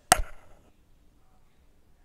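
A single sharp knock just after the start, then quiet room tone.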